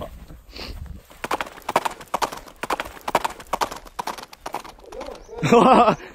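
Sound effect of horse hooves clip-clopping at a quick, even pace, followed near the end by a loud wavering cry.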